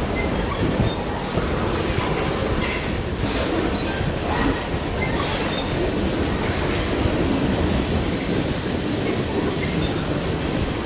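Freight train cars rolling slowly through a level crossing: a steady, continuous noise of steel wheels running over the rails.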